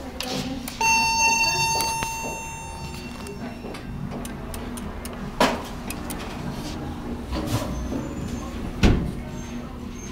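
A single elevator chime sounds about a second in and rings out over about two seconds. Under it runs a steady low hum, with a few sharp knocks later on.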